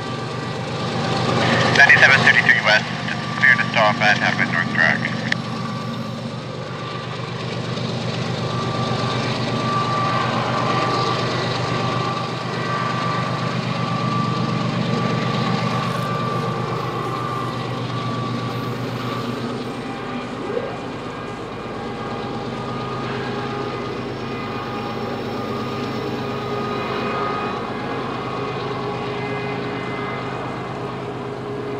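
Diesel locomotives of a loaded coal train running, a steady low drone with a faint high whine over it, as the rear remote locomotive comes up to the sprayers. A voice talks briefly in the first few seconds.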